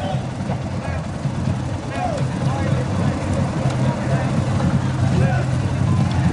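A low, steady vehicle engine rumble that grows gradually louder, with faint voices in the background.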